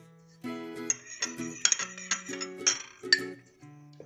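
A metal spoon clinking against a glass bowl as balsamic vinegar and olive oil are stirred together, several sharp clinks from about a second in. Background music with plucked guitar-like notes plays throughout.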